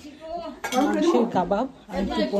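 Plates and cutlery clinking while food is served from a table of dishes, under a voice that comes in about half a second in.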